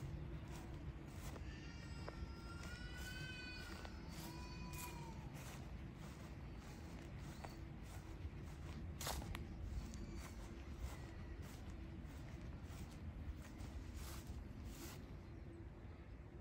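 A few short, high, arched animal calls between about two and five seconds in, heard faintly over soft regular footsteps.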